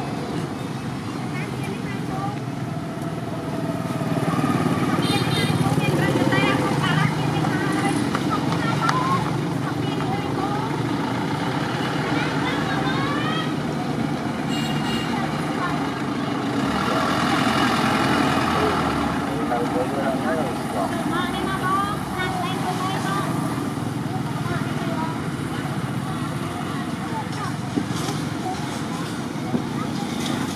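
Outdoor roadside ambience: steady road-traffic noise, with a vehicle going by and growing louder a little past the middle.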